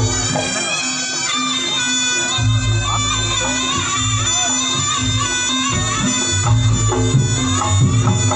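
Live traditional Javanese reog music played loud: a shrill reed trumpet (slompret) plays a wavering melody over a held low tone, with drums pulsing underneath.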